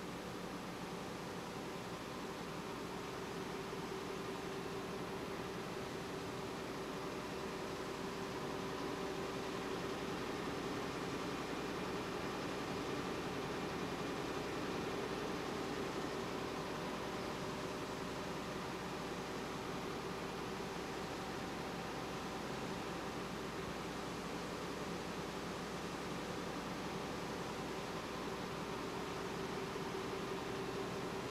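Steady drone of a running web offset press, a hum at a few fixed pitches over an even hiss, swelling a little during the first dozen seconds and then holding level.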